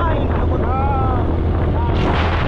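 Motorcycle on the move: wind rumbling on the microphone over the engine's steady running. A voice calls out briefly in the middle.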